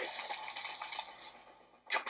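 Rapid computer-keyboard typing from a film soundtrack, played through a smartphone's small side-firing speaker. It fades away over about two seconds.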